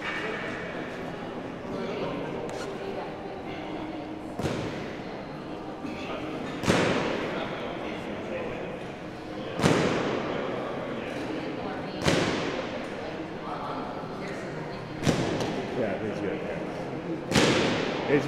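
Six heavy thuds, about two and a half seconds apart, each ringing on in a large hall, over a murmur of background voices.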